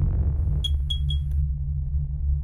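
Electronic logo-intro sting: a steady deep bass drone with three quick, bright, high pings a little over half a second in, followed by a click.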